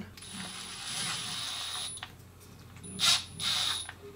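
A screwdriver driving a small screw into an RC truck's driveshaft drive cup, in two spells of metal-on-metal turning: one of almost two seconds, then a shorter one near the end.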